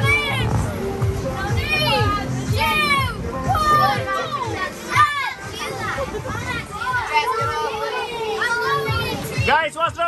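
Children at play on an inflatable bouncy-castle slide, a jumble of high-pitched squeals and shouts with no clear words, over background music.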